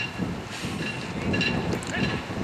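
Outdoor ambience: wind rumbling on the microphone with distant voices, and a few faint short chirps.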